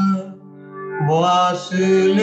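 A man singing a slow, ornamented devotional melody in a solo voice. The voice breaks off for a breath about a third of a second in, while a low held note carries on underneath, and the voice comes back just after a second.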